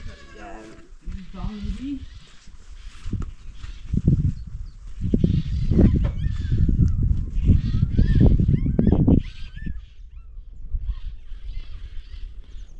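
Domestic goat bleating a few times in the first couple of seconds, followed by a louder, low rumbling stretch from about four to nine seconds.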